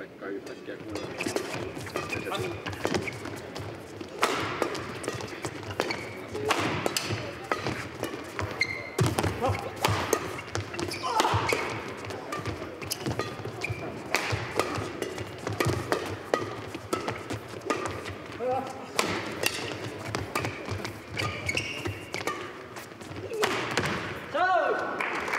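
Badminton doubles rally: rackets repeatedly hitting the shuttlecock, with thuds of players' feet and shoes squeaking on the court floor.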